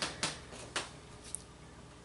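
A few faint, short clicks, three of them spread over about a second and a half.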